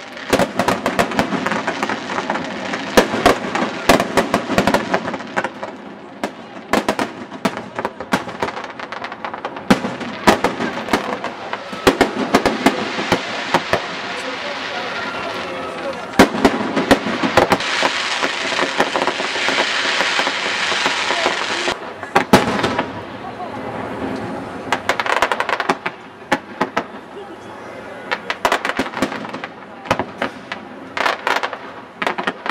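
Aerial fireworks going off: a rapid, irregular series of sharp bangs and crackles from bursting shells. Past the middle it builds to a dense, loud stretch of crackling that cuts off abruptly, then scattered bangs carry on.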